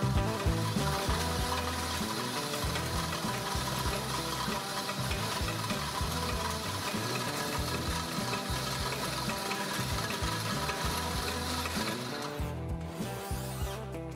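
Shell-pasting machine for spherical firework shells running: a steady mechanical whirring and rubbing as its spinning hoop turns the paper-covered shell.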